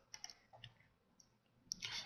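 A few faint, short computer mouse clicks in the first second, then another just before the end, over near-silent room tone.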